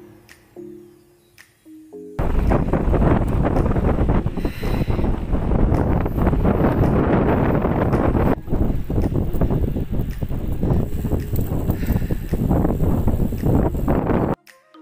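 Background music for about two seconds, then a sudden cut to loud, fluttering wind noise buffeting the microphone of a camera riding on a moving bicycle, which runs on until it stops abruptly at the end.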